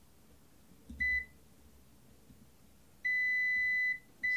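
Continuity buzzer of a UNI-T UT195DS multimeter beeping as its probes touch pins on a circuit board. There is a brief blip about a second in, then a steady beep from about three seconds in. The steady beep signals a near-zero-resistance connection between the probed points.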